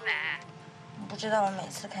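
A woman's voice: a brief high vocal sound at the start, then a woman talking from about a second in.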